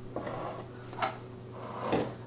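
Rummaging for a mislaid knife: objects are shifted and handled on a home bar counter, with faint scuffing and one sharp knock about a second in.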